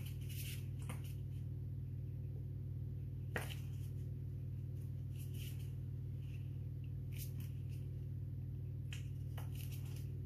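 Steady low background hum, with a few faint clicks and taps from small tools and paint being handled.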